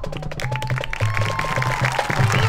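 Marching band playing: a held high note over repeated low bass notes in a steady pulse, with quick percussion strokes.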